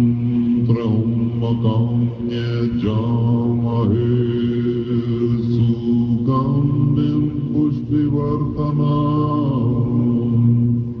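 Tibetan Buddhist prayers chanted by a group of voices in a deep, steady, held drone, the pitch stepping down about two seconds in and up again about six seconds in. Recorded on a battery-powered hand-held tape recorder.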